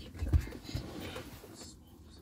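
Two low thumps and soft rustling as someone shifts about close to the microphone inside a pickup's cab, fading away by the end.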